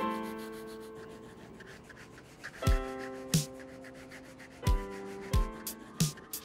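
Felt-tip marker rubbing across sketchpad paper in about four short strokes, over soft background piano music.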